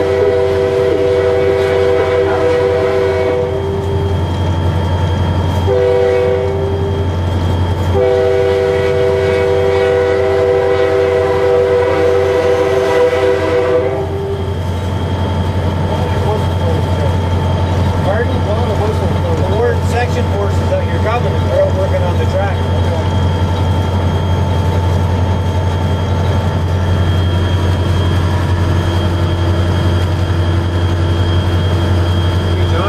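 EMD SD40-2 locomotive horn heard from the cab. It sounds a long blast ending about three seconds in, a short blast about six seconds in, then a long blast of about six seconds that stops about fourteen seconds in. Under it and after it, the locomotive's EMD 16-645 two-stroke diesel drones steadily as the train rolls on.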